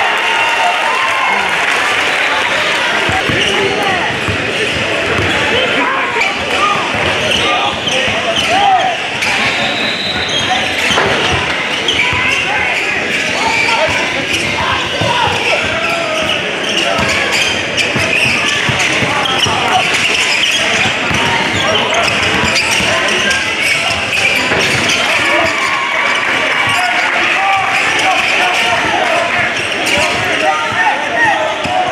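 Live game sound of basketball: a ball bouncing on a hardwood court, with players' and spectators' voices mixed in throughout, in a large gym hall.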